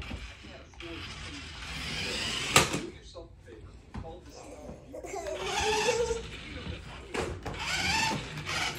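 Small electric motor of a toy remote-control car whirring as the car drives across a hardwood floor, with one sharp knock about two and a half seconds in.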